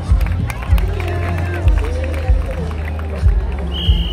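Music with a heavy, regular bass beat over the voices of a crowd, and a short, steady high whistle blast near the end.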